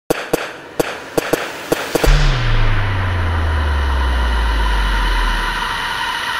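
Logo sting sound effect: a run of sharp, irregular cracks, then a deep boom about two seconds in whose low drone slides down in pitch and slowly fades.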